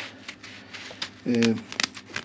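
Fingers rubbing and handling a sheet of breather felt stiffened with absorbed excess epoxy: a soft rustle, with a few sharp crackles near the end.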